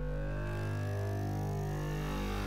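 Synthesized logo sting: a deep, sustained electronic drone with layered tones above it that shift in steps, and fainter high tones slowly rising.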